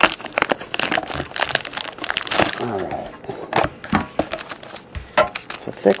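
Foil trading-card pack wrapper crinkling and tearing as it is opened by hand, a dense, irregular run of crackles and rustles.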